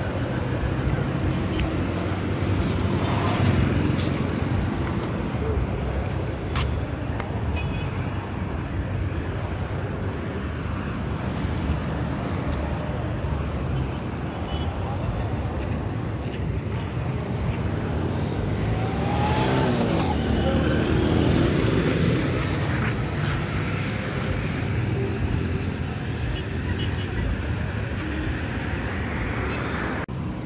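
Road traffic of cars and motorcycles passing on a busy street, a steady low rumble that swells as a louder vehicle goes by about two-thirds of the way through.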